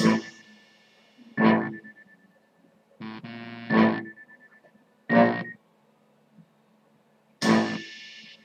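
Instrumental hip-hop backing beat with no vocal: sparse synthesizer keyboard chord stabs, about five hits spaced a second or so apart with short silences between them.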